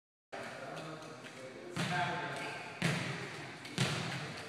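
A ball bouncing on a hardwood gym floor three times, about a second apart, each bounce echoing briefly in the large hall, with voices murmuring.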